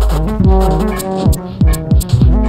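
Upright bass and modular synthesizer playing together: held low bass notes under a loose pattern of short, deep, falling-pitch thumps and sharp high clicks, several per second.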